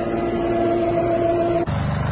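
Vehicle engines running: a steady hum with a held tone, then a cut about a second and a half in to a deeper, evenly pulsing engine sound.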